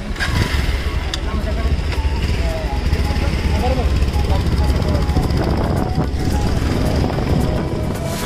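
Motorcycles running at low speed, a steady low rumble, with people's voices over it.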